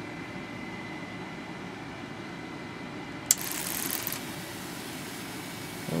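Steady hum of a small 12-volt cooling fan in the Tesla coil driver's housing. A little over three seconds in comes a sharp switch click, followed by about a second of hiss.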